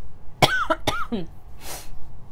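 A woman coughing a few times, about half a second in, with short rough voiced bursts.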